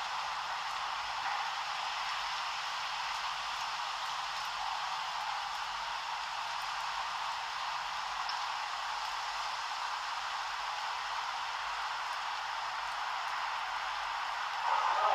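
Steady, even hiss like static, holding the same level throughout, with no low rumble and no distinct events.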